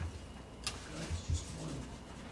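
Quiet room noise with a sharp click about two-thirds of a second in and a few soft low thumps.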